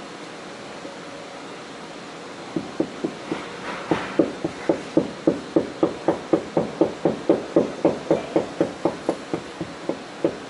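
A mallet striking a putty knife in a quick, steady rhythm of about three blows a second, starting a couple of seconds in: the knife is being driven along to scrape up the boat's fiberglass deck.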